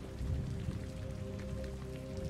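Steady rain falling, with soft background music holding a few sustained low notes.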